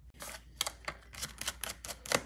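Phillips screwdriver backing screws out of a laptop's metal back plate: a quick, irregular run of small metallic clicks and ticks, several a second.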